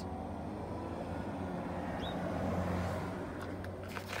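Steady low hum with a faint noisy haze, swelling slightly in the middle, and a short sharp click near the end.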